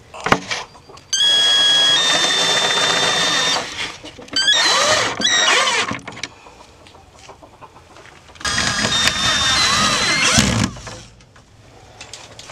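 Power drill driving screws through a plastic milk crate into solid oak bracing, in three runs: a steady whine from about a second in, a shorter run around five seconds with the pitch sliding up and down, and a third near nine seconds.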